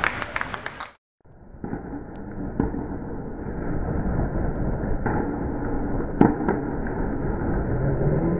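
Teammates clapping for about a second, then the sound cuts out. Then comes a steady rumble with a few sharp knocks spread through the rest: a candlepin bowling ball rolling down a wooden lane and knocking into pins.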